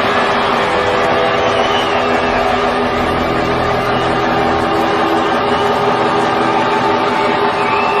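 A live rock band's closing drone: a loud, sustained wall of distorted electric guitar noise and feedback with several steady held tones and no singing.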